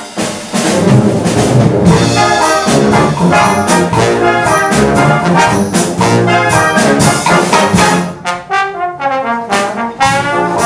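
Brass band of cornets, trombones, euphoniums and tubas playing a loud full-band passage. A little after eight seconds in, the low brass drops out briefly, leaving quicker, higher lines.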